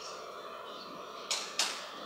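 Two quick sharp clicks about a third of a second apart, over steady room hiss: key presses advancing the presentation by two slides.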